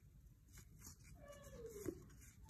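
A faint dog whimper: one short whine falling in pitch, past the middle. Baseball cards in a hand being flipped to the next card, faint.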